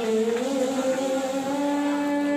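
A girl's voice reciting the Qur'an in melodic tilawah style, drawing out one long note that steps up slightly in pitch about half a second in, then holds steady.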